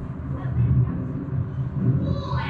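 A low, uneven rumble with faint voices in the background.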